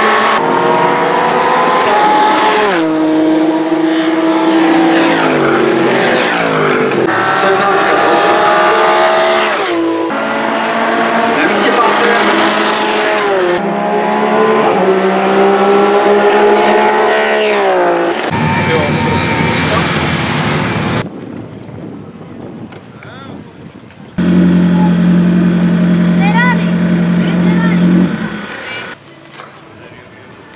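GT race cars passing one after another at full throttle on the finishing straight, each engine's pitch dropping as it goes by or shifts up. After about 18 seconds the passes give way to a short steady engine hum.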